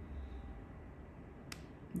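Low steady hum with one short, sharp click a little past halfway, from the needle-free pressurized injector pen held against the skin.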